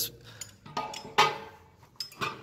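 Light metal clinks, then one sharp metallic clank a little over a second in, as a steel mower jack is handled at its bracket, its pin and chain rattling.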